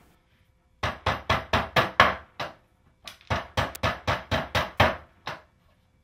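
Hammer tapping on the protruding points of long drywall screws driven through plywood, knocking them off. Two quick runs of light strikes, about five a second, with a short pause between them.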